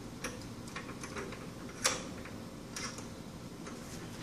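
Small parts being handled by hand on a workbench: a few irregular clicks and light knocks, the sharpest a little before two seconds in.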